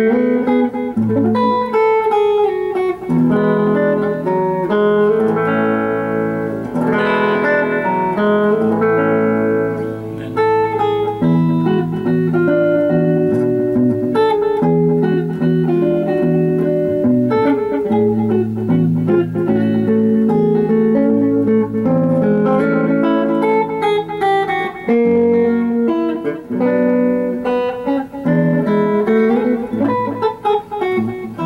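Hollow-body electric guitar fingerpicked solo, with single bass notes played by the thumb under a melody and chords on the higher strings, running continuously.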